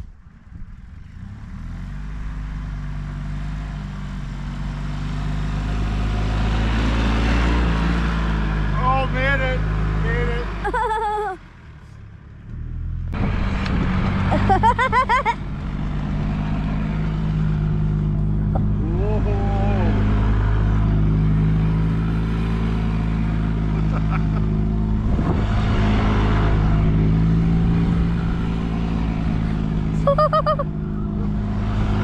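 Gas golf cart engine running under throttle as the cart spins and slides through snow. The engine note rises and falls, cuts back sharply for about two seconds near the middle, then picks up again.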